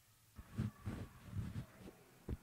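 Faint, echoing ice-rink noise: distant voices and a few knocks carrying through the arena, starting about half a second in.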